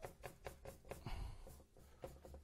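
Wide bristle brush stroking and dabbing acrylic paint onto a stretched canvas: a quick run of faint brush strokes, about four or five a second.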